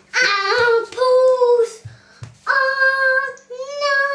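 A young boy singing in a high voice, holding long drawn-out notes: two in the first couple of seconds, then two more after a short gap.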